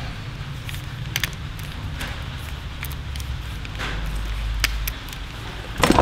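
A few scattered light clicks and handling rustles from a Craftsman ratcheting screwdriver being turned over in the hands, over a steady low hum.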